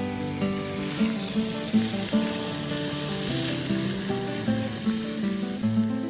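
Bacon sizzling in a frying pan, coming in about a second in and loudest around the middle, over acoustic guitar music picked in steady notes.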